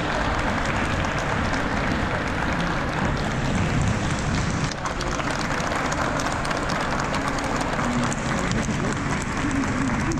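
A large audience applauding, many hands clapping at a steady level.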